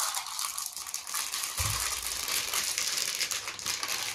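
A plastic bag packed with small bags of square resin diamond-painting drills being handled, the plastic crinkling and the drills rattling inside. There is a dull thump about a second and a half in as the bag is laid down on the canvas.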